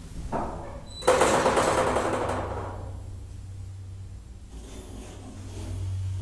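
Elevator doors sliding shut with a brief clatter about a second in, fading away, over the steady low hum of the elevator's drive as the car starts its ride up.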